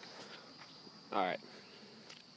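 Insects trilling steadily in a thin, high continuous tone. About a second in, a person's voice briefly makes a short sound that falls in pitch.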